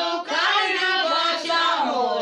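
A small group of women singing a worship chorus together without instruments, in a loud, continuous melodic line.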